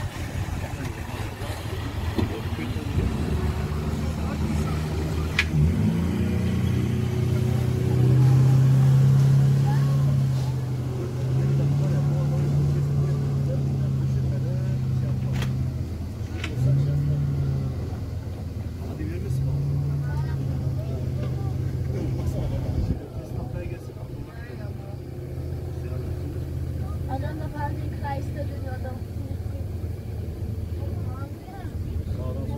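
Motorboat engine running at speed, a steady low drone heard from aboard the boat that swells louder in stretches through the middle, over the rush of water and wind.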